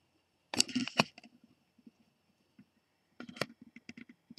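Handling noise from a small collectable figurine held close to the microphone: a short rustle ending in a sharp click about half a second in, and a smaller cluster of clicks near the end.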